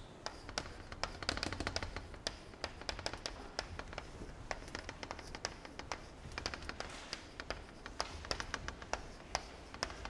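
Chalk writing on a blackboard: an irregular run of quick taps and short scratches as each letter is written.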